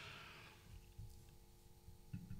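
Near silence: a faint steady electrical hum, with a soft low knock about a second in.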